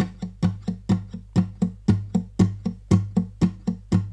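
Gibson Advanced Jumbo acoustic guitar picked by the right-hand index finger in an even, unbroken run of short percussive plucks, about four a second, on low notes.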